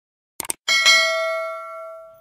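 Subscribe-button animation sound effect: a quick double click, then a bright notification-bell ding that rings on and fades away over about a second and a half.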